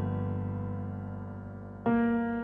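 Music: a keyboard chord with a piano-like tone rings out and slowly fades, and a new chord is struck near the end.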